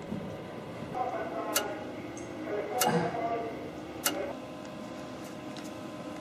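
Three sharp clicks, spaced about a second and a quarter apart, over the steady hum of running radio equipment, with low, indistinct voices.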